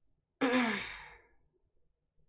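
A man's exasperated sigh about half a second in: a voiced breath out that falls in pitch and fades away over about a second.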